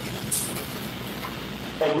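Steady background noise of a room picked up through a talk's microphone, with a short hiss about a third of a second in; a man's voice begins just before the end.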